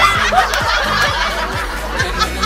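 Several women laughing hard, high-pitched and in breathless bursts, over background pop music with a steady beat.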